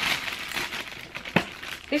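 Clear plastic polybag crinkling and rustling as a pair of shoes is pushed into it, with one sharper crackle about a second and a half in.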